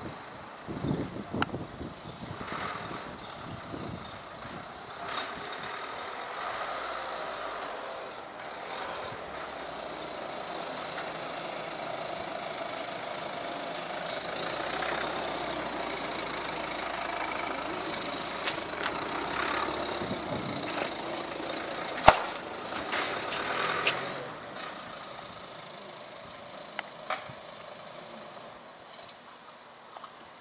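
Ford Focus hatchback's engine running as the car moves slowly out and past at close range, building up towards the middle and dropping away about two-thirds of the way in. A single sharp click about two-thirds in is the loudest sound, with a few smaller knocks around it.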